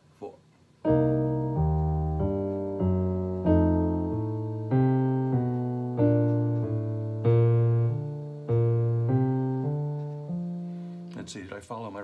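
Digital keyboard with a piano sound playing a jazz ii–V–I in B-flat: a walking bass line of even quarter notes in the left hand, going up the triad and then an approach note to each next chord, under right-hand chord voicings of thirds and sevenths. There are about one and a half notes a second, starting about a second in and stopping about a second before the end.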